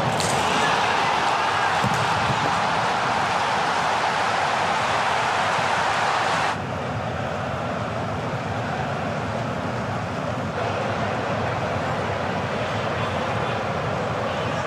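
Football broadcast stadium sound: a steady wash of noise with a sharp ball strike right at the start. The noise drops suddenly about six and a half seconds in and rises a little again about ten and a half seconds in.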